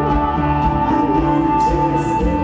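Live acoustic band music: acoustic guitar, lap steel guitar and violin playing, with a long held high note.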